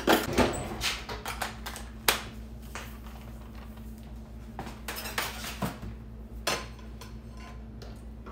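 Metal kitchen utensils clinking and clattering as a drawer is rummaged through, in a run of short irregular knocks, the sharpest about two seconds in.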